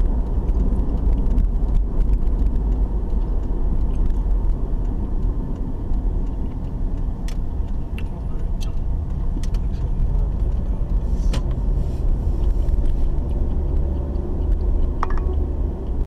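Car driving, heard from inside the cabin: a steady low rumble of engine and road noise, with a few faint clicks in the middle.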